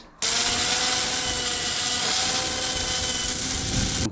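Angle grinder running against the edge of a flat steel bar, a steady grinding hiss with a constant whine, deburring the cut edge. It starts abruptly a moment in.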